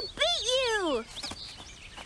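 A cartoon cub's high-pitched wordless vocal exclamation: two quick rising-and-falling cries in the first second, the second one sliding down in pitch.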